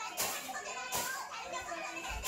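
A young child vocalising while playing, without clear words, with two brief sharp noises about a quarter-second and a second in.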